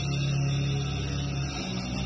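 Live metal band with electric guitar holding a low sustained chord, which changes to a new chord about one and a half seconds in.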